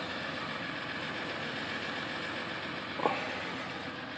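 Ram 1500's 3.0-litre EcoDiesel V6 turbodiesel idling steadily in Park, heard from inside the cab, with a light knock about three seconds in.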